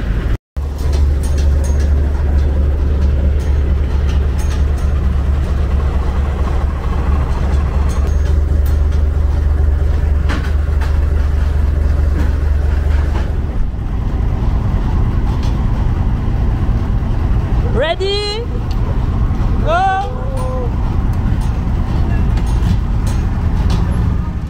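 Diesel engine of a heavy 4x4 expedition truck running with a steady deep hum, its tone shifting about halfway through. A person's voice calls out briefly twice near the end.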